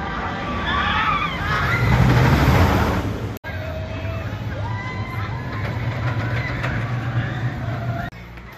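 A roller coaster train rumbling along its track overhead, swelling to its loudest about two to three seconds in, with high squeals above the rumble. After an abrupt cut, a steadier rumble of a ride train moving on its track, with short high squealing tones.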